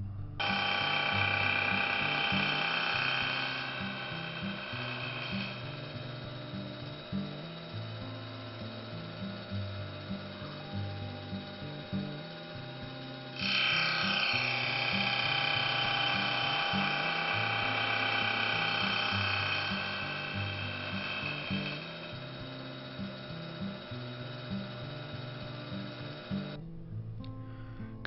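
CNC milling machine cutting gear teeth in a brass gear blank with a gear cutter, a steady high machining whine that gets louder about halfway through and stops shortly before the end. Background music with stepping low bass notes plays throughout.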